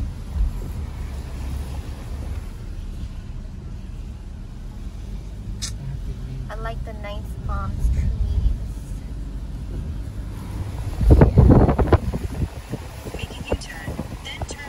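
Steady low road rumble inside a moving car's cabin on rain-wet streets, with a louder rushing burst about eleven seconds in.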